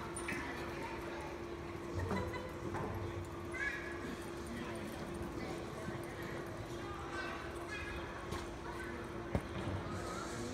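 A horse's hoofbeats with people's voices in the background, over a steady hum, and one sharp knock near the end.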